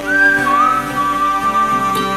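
A person whistling a melody over acoustic guitar: a short high note slides down and settles into one long held note. Acoustic guitar chords ring on underneath.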